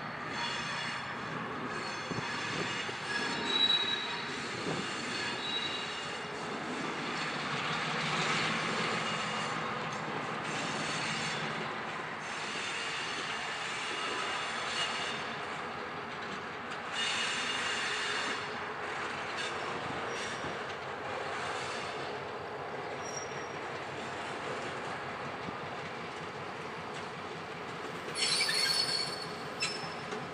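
AKDN 1503, a diesel switcher locomotive, creeping over curved track and switches with its wheels squealing, high and thin, over the steady running of its engine. The squeals come and go, with the loudest a few seconds in, around the middle, and near the end.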